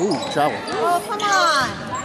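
Basketball game on a hardwood gym court: a ball being dribbled while sneakers squeak in short rising and falling chirps on the floor, several in quick succession, with voices in the gym behind.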